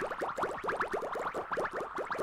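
Logo-animation sound effect: a dense, even flurry of short rising chirps, about ten a second.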